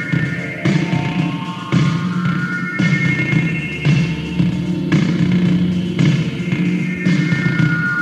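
Electronic trance drone from two Korg Poly-61 synthesizers, their arpeggios triggered from a Boss DR-220 drum machine, with sustained high and low tones and a new pulse starting about once a second.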